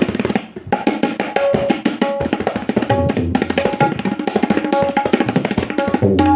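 Tabla pair played solo in a fast, dense run of strokes, the dayan ringing at its tuned pitch. Deep bass strokes on the bayan join in from about two seconds in.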